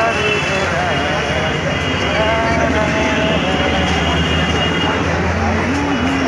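Busy street ambience: many voices chattering over a steady traffic rumble.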